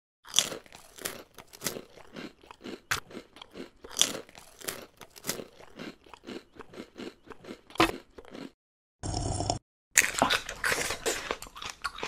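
Close-miked crunchy chewing: a run of irregular crisp bites and crackles, with a short steady burst of noise about nine seconds in before the crunching resumes.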